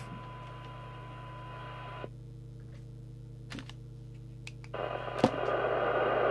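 PNI 8001 CB radio's speaker on receive, playing a signal generator's steady 1 kHz test tone over a low hum during a receive-sensitivity check. The tone cuts off about two seconds in, a few clicks follow, and near the end a louder rush of FM receiver hiss comes up.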